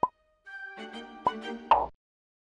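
Light background music that stops and starts again, with three short cartoon 'plop' sound effects: one at the very start, one just past the middle and the loudest near the end, where the music cuts off.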